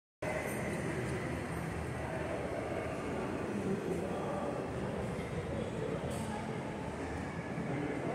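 Steady, indistinct background noise of a shopping-mall shop interior, a constant rumble and hiss with no clear single source. The sound cuts out completely for a moment at the very start.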